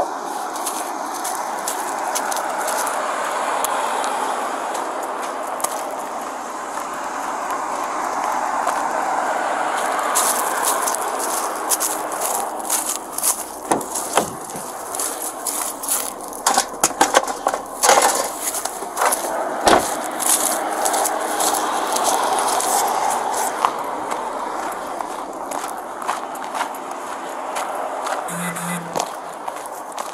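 Hands rummaging through a pickup truck's cab, with clusters of short knocks, clicks and rattles from bottles and bags being moved, mostly in the middle stretch, over a steady rushing noise.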